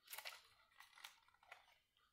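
Near silence, with a few faint, short clicks and rustles of light plastic pieces and wooden skewers being handled as a vase arrangement is turned.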